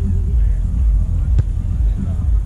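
A single sharp slap about one and a half seconds in, typical of a hand striking a volleyball, over a steady low rumble.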